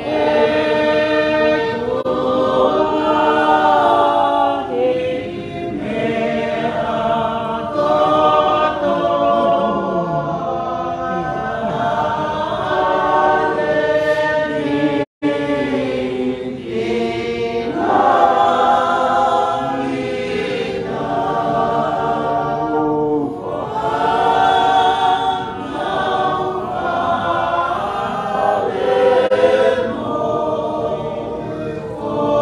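A church choir singing a hymn in Tongan, many voices holding long sung notes together. The sound cuts out for a split second about halfway through.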